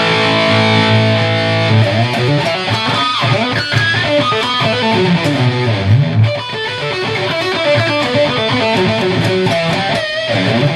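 Heavily distorted electric guitar: an Epiphone SG's single bridge humbucker through an Electro-Harmonix Metal Muff with Top Boost, gain about three-quarters up and EQ set level, into a Randall RG100's clean channel and a Behringer 4x12 cabinet. A chord rings out for nearly two seconds, then fast riffing with many quick notes.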